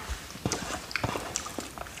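Close-miked chewing of a mouthful of fresh strawberry: irregular wet clicks and smacks of the mouth.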